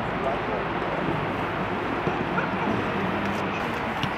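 Outdoor football training-ground ambience: a steady wash of background noise with distant voices and a few short high-pitched calls.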